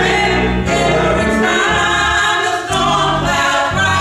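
Small gospel choir singing with organ accompaniment, the voices moving over steady held organ chords.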